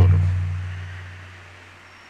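A single deep, resonant tone that starts suddenly and fades away smoothly over about two seconds.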